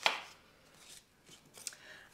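Rigid foam test blocks handled on a workbench: a sharp knock as a piece is set down at the very start, then faint clicks and rustles as the next sample is picked up.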